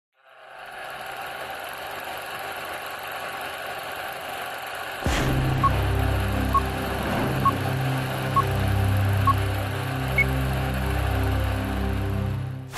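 Film-leader countdown sound effect: a steady hiss fades in, then about five seconds in a thud brings in a low mechanical hum like a running film projector. Over it come short beeps about once a second, five in a row, and a single higher-pitched beep near the end.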